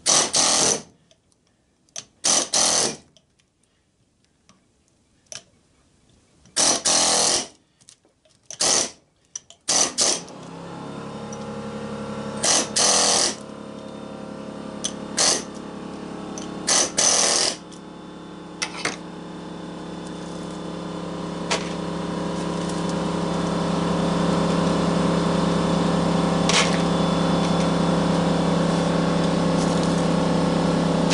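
Pneumatic air chisel firing in short bursts of about half a second to a second against an electric motor's copper windings. From about ten seconds in, a steady machine hum with several tones starts and grows gradually louder, with a few more chisel bursts over it.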